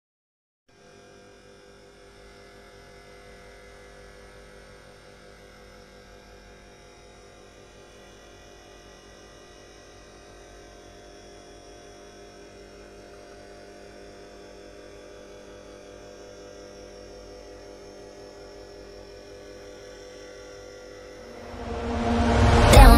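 Steady electrical hum of an aquarium air pump driving a sponge filter, growing slightly louder as it goes.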